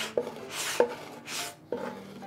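Wooden spoon scraping across a large wooden plate, three short scrapes gathering the last sticky natto rice, with light wooden knocks between them.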